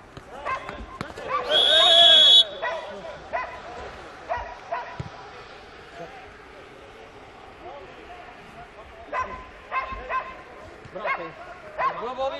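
A referee's whistle blown once in a single blast of about a second, roughly a second and a half in, stopping play, over loud shouts from the players. Scattered short shouts and calls follow.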